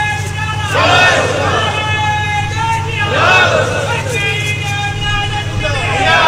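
A man weeping into a microphone: high-pitched, drawn-out sobbing wails, one starting about a second in and another about three seconds in, each held for about two seconds. A steady low hum runs underneath.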